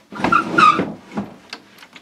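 A wooden board carrying a plastic developing tray slid across the top of a sink: a scrape with a short squeak lasting under a second, followed by a few light knocks.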